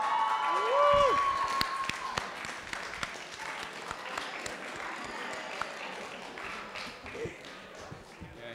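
Audience applauding, with whoops and cheers over the first couple of seconds; the applause then slowly dies down.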